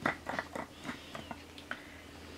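Light plastic clicks and taps from a Spherificator, a handheld automatic caviar and pearl maker, as its lid is fitted and the unit is handled over a bowl. There are about half a dozen separate clicks, the loudest at the very start.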